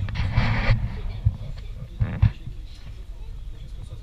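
Muffled low thumps and a brief rustle close to the microphone, typical of a camera being handled and of clothing brushing it, over a low rumble with faint indistinct voices. A couple of knocks come about two seconds in.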